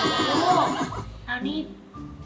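Horse whinny sound effect, a wavering high neigh that trails off about a second in.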